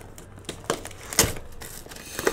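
Plastic shrink wrap crinkling and tearing as it is pulled off a sealed trading-card hobby box, with a couple of sharper crackles about halfway through.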